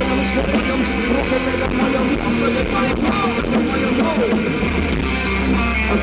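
Live rock band playing at full volume, with electric guitars to the fore over bass and drums.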